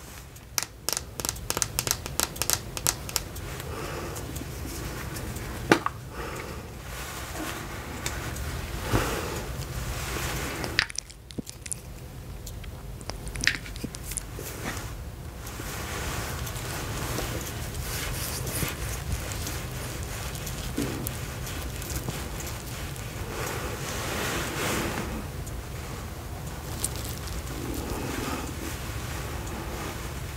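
Fingernails tapping quickly on a plastic serum pump bottle held close to the microphone for the first few seconds, with a few single taps after. Then a long stretch of soft rustling and rubbing of hands close to the microphone.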